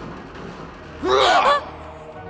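A loud, short vocal cry about a second in, its pitch swooping up and down for about half a second, over a low, held background music score.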